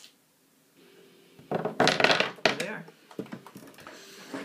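A handful of AA batteries spilling out and clattering onto a wooden tabletop: a quick run of hard rattling knocks starting about one and a half seconds in and lasting about a second.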